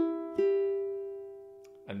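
Flight Fireball ukulele: the open second string sounds from a pull-off right at the start, then the open fourth string is plucked about half a second in and rings on, slowly fading.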